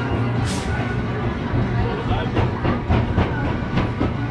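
Roller coaster station sounds: background music and people talking, with a short hiss of air about half a second in and a run of sharp clicks in the second half while the train waits to depart.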